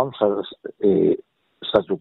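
Speech only: a man talking with short pauses.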